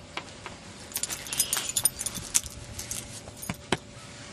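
Small metal pieces jingling and clinking in short, irregular bursts, starting about a second in.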